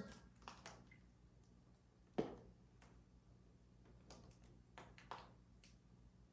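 Near silence with a few faint taps and clicks and one sharper knock about two seconds in, from handling the aquarium lid while a bag of fish is floated in the tank.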